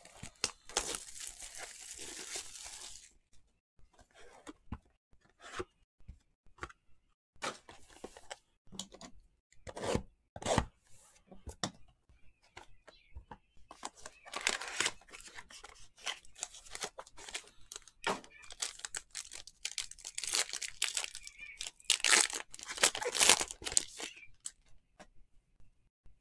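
Plastic wrap being torn and crinkled off a sealed Topps Triple Threads baseball card box, with short knocks and rubs of the cardboard box being handled. There is a long tearing stretch near the start and more crinkling bursts about fourteen and twenty seconds in.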